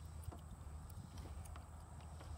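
Faint, irregular knocks of a person's hands and boots on the wooden beams of a weaver obstacle as he climbs over and under them, over a low steady hum.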